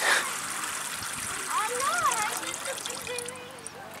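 Water spraying in many thin streams from the holes in the base of a terracotta chantepleure into a ceramic jug, the flow released by uncovering the pot's top opening. It is strongest at the start and tapers off toward the end as the flow stops.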